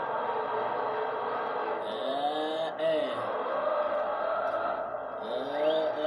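A man's voice drawing out long 'ehh' sounds, twice rising and falling in pitch, over steady background noise.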